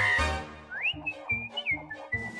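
Cartoon score music: a loud chord at the start, then short, separate bass notes under a high whistled line that slides up about two-thirds of a second in and bends between held notes.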